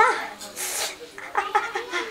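A woman's voice crying out and moaning in a few short, wavering wails, acted as pain from an upset stomach.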